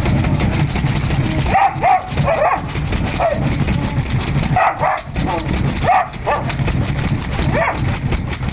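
Dogs at a glass door, whining and yelping in short high calls that come several times, with claws scratching at the glass. A steady low hum runs underneath.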